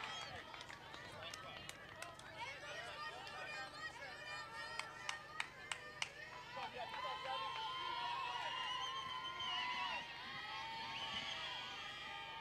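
Distant softball players' voices calling and chanting on the field and from the dugout, some long drawn-out calls near the middle. A quick run of about five sharp claps comes around the halfway point.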